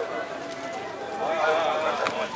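People talking, their voices loudest about halfway through, over the steady background hubbub of an outdoor crowd.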